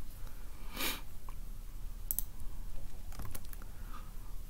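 A few light computer mouse and keyboard clicks, around the middle and again near the end, with a short breath about a second in, over a low steady hum.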